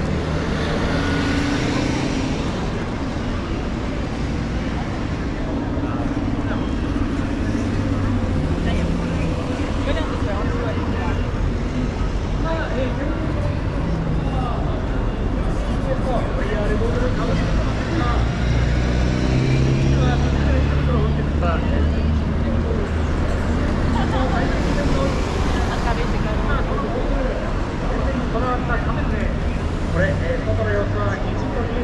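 City street traffic noise with a bus engine running close by, its low drone loudest about two-thirds of the way in, mixed with the chatter of passers-by.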